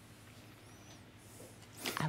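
Near silence: room tone, with a voice starting to speak right at the end.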